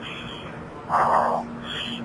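A short, muffled, unintelligible burst over a radio link about a second in, a voice too garbled to make out, over a steady low hum and radio hiss.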